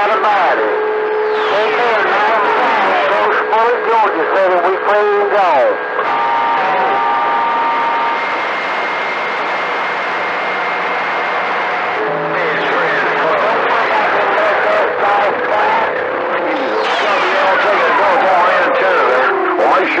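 CB radio receiver on channel 28 (27.285 MHz) giving out static hiss and garbled, unintelligible voices from distant stations. Slow falling whistles come in near the start and again near the end, and steady tones sound a few seconds in.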